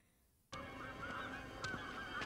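Birds cawing repeatedly in a cartoon soundtrack, starting about half a second in after a brief silence.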